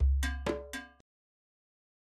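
Short closing musical sting: three quick struck, pitched notes over a low bass note, ending about a second in.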